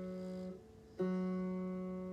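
Guitar's open third string, tuned to F sharp for open D tuning, plucked and left ringing as a single steady note. The note is damped about half a second in, then the string is plucked again a second in and rings on.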